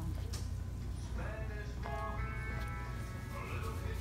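Music with a few held, stepping notes, starting about a second in and fading before the end, over a steady low hum.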